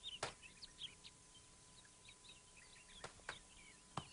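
Near silence with faint birds chirping: short high chirps scattered throughout, plus a few soft clicks, two of them close together about three seconds in.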